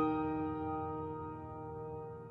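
Piano music: a chord struck just before, ringing on and slowly fading away.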